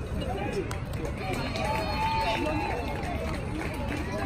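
Several people talking at once, their voices overlapping in unbroken chatter.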